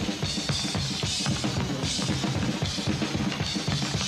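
A drum kit solo played fast, in a malambo rhythm: a dense run of tom, snare and bass drum strokes with cymbal crashes every half-second to second, from an old live recording.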